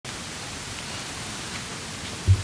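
Steady even hiss with no distinct events: room tone and the recording's noise floor.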